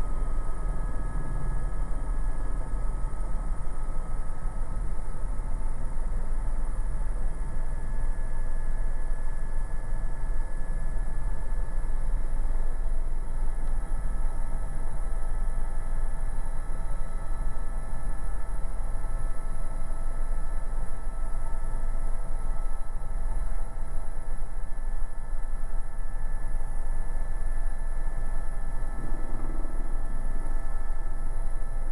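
Airbus EC130 helicopter heard from inside its cockpit, rotor turning and Safran turboshaft engine running: a steady deep rotor rumble under a high, thin turbine whine. The whine rises slightly in pitch about a third of the way through.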